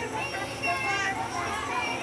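Toddlers' voices babbling and vocalizing in high, wavering tones.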